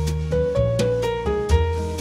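Instrumental background music: a melody of short, evenly paced notes, about four a second, over long held bass notes.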